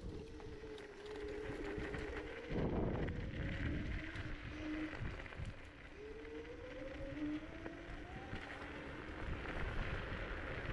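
Kaabo Mantis 10 Pro electric scooter's dual hub motors whining as it rides, the pitch dropping over the first couple of seconds and rising again from about six seconds in as it speeds up. Underneath runs a rumble of tyres on gravel and wind on the microphone, with a loud rough rush about two and a half seconds in.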